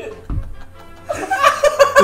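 Several men laughing hard over faint background music, the laughter quieter at first and swelling about a second in.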